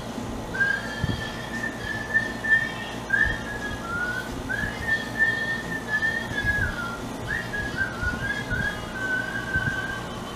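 A man whistling a tune, the notes sliding up and down with short breaks between phrases.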